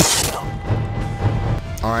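A sudden crash-like hit that dies away quickly, then background music with a low bass pulse; a man's voice comes in near the end.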